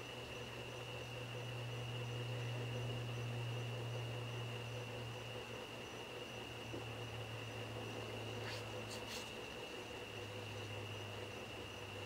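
Steady low hum with a thin, steady high-pitched whine above it, and two faint clicks about eight and a half seconds in.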